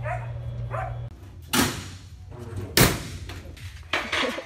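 A door being opened, with two loud bangs about a second apart. A low steady hum cuts off about a second in.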